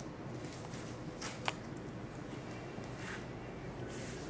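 Faint scuffing and clicking of a small puppy moving and playing on a hard floor, with one sharp click about a second and a half in.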